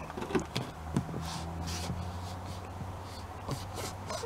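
A hand rubbing and pressing a sticker flat onto a cabinet door: a few short scuffing strokes and light taps, over a steady low hum.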